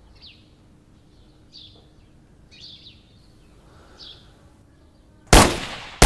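A few faint bird chirps over quiet outdoor background, then a single loud pistol shot near the end that rings off for about half a second.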